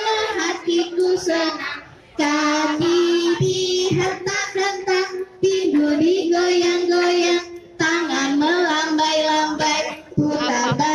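Young children singing a song together in unison, in sung phrases of held notes broken by short pauses.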